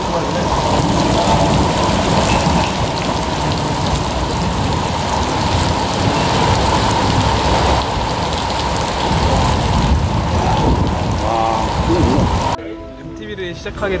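Heavy downpour of rain pouring down hard. The rain cuts off suddenly about a second and a half before the end, giving way to quieter outdoor ambience.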